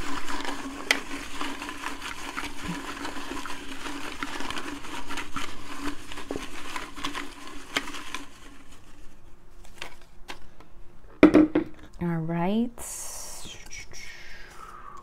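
Folded paper slips rattling and rustling against the inside of a glass jar as it is shaken, dense at first and thinning to scattered ticks after about eight seconds. A brief high rustle of paper follows near the end.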